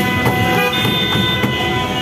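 Several car horns honking at once and held, over steady traffic noise in a crowded street.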